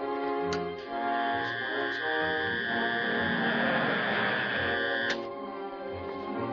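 Background film music, with a steady electric hum from the televiewer machine that comes on about a second in and cuts off sharply with a click about five seconds in; a few switch clicks near the start.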